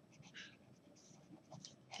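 Faint scratching of a felt-tip marker writing on paper, in several short strokes.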